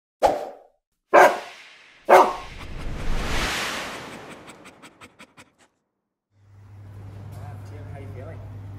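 A dog-bark sound effect in a logo sting: three sharp barks about a second apart, followed by a whoosh and a run of about eight fading ticks. A steady low hum comes in about six and a half seconds in.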